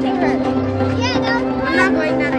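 Children's voices calling out and chattering over background music with steady held tones.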